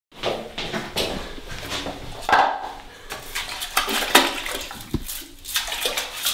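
Toilet brush scrubbing and splashing in a toilet bowl: irregular scrapes, swishes and knocks against the porcelain, with a dull knock about five seconds in.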